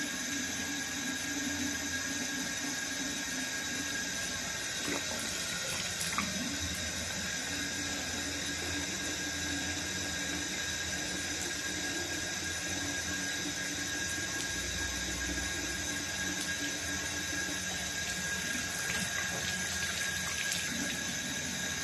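Water running steadily from a tap in a thin stream into a sink, with a couple of small knocks about five and six seconds in.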